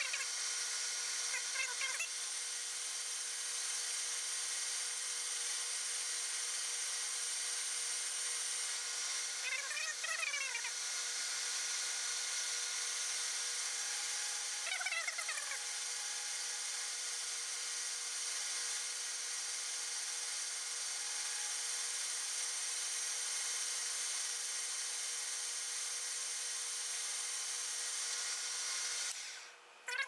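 Metal lathe running under a cut, a DNMG carbide insert turning down the outside diameter of a steel bushing, with a steady whir that stops about a second before the end. A cat meows several times over the machine noise.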